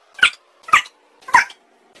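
Three short, sharp shouts about half a second apart, each falling in pitch. They come from a sped-up run of barked exclamations of 'fuck'.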